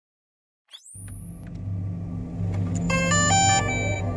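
Logo-intro sound design: a quick rising whoosh, then a low steady hum, drone-like, that grows louder. Near the end a short run of bright chime notes rings over it.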